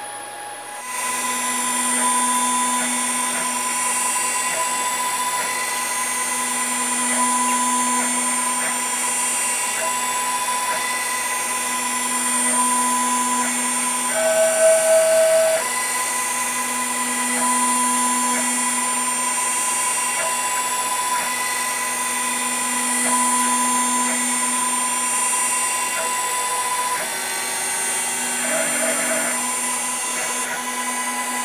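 CNC router spindle running and cutting pockets into UHMW plastic, with the steady whine of the machine's motors that swells and eases every few seconds as the tool works. Midway the tone briefly changes and gets louder, and it shifts again near the end as the machine moves between cuts.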